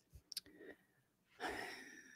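A near-silent pause broken by a single short click, then a soft intake of breath in the last half-second before speech resumes.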